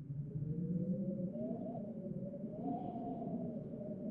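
Eerie soundtrack drone fading in: a low rumble under a wavering tone that slowly rises and falls.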